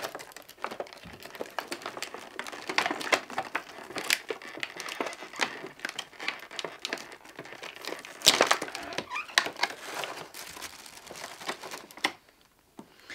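Clear plastic packaging crinkling and crackling as a figurine is unwrapped, in irregular clicks and rustles, with a louder crackle about eight seconds in.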